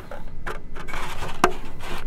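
Handling noise from a hard black 3D-printed plastic part being turned over in the hands, with a soft rubbing rustle and one sharp click about one and a half seconds in.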